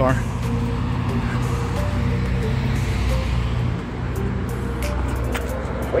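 Road traffic at an intersection: a steady low rumble of car and pickup-truck engines and tyres driving past, dipping briefly about four seconds in. Background music runs underneath.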